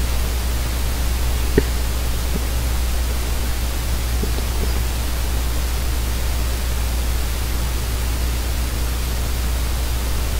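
Microphone noise floor: a steady hiss with a low hum beneath it, and one faint click about one and a half seconds in.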